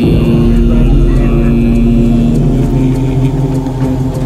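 A chanted voice holding long, steady notes over a loud, steady low rumble.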